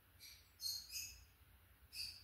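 A bird chirping: a few short, high chirps in quick succession.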